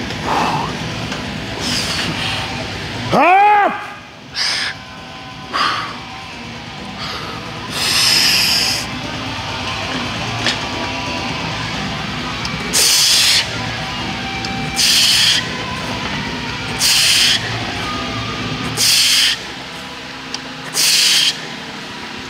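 A powerlifter's loud, hissing breaths through a heavy set of Zercher squats, a sharp breath about every two seconds in the second half, one for each rep. A brief rising-and-falling cry about three seconds in.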